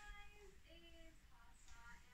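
Faint, thin singing voice, child-like, from a film playing on a TV: a few held notes, then quicker short notes in the second half.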